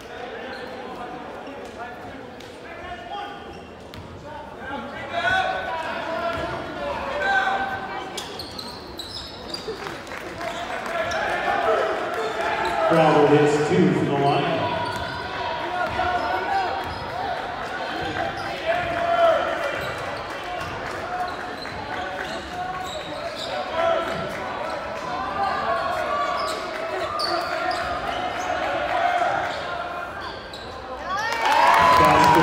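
Basketball bouncing on a hardwood gym floor under the echoing chatter of spectators and players in a large gym, with one louder voice falling in pitch about halfway through.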